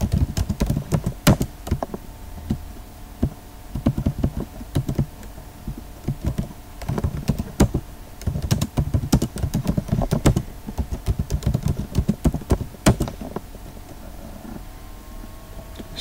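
Computer keyboard typing in quick bursts of key clicks with short pauses, as terminal commands and a code edit are keyed in; the typing thins out over the last couple of seconds.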